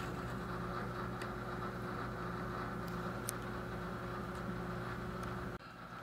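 Steady room hum with several even tones and a few faint ticks. It dips out briefly near the end.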